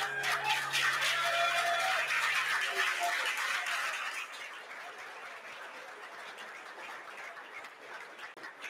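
Audience applauding, loud for about the first four seconds and then thinning out, with the last held note of guitar music fading under it near the start.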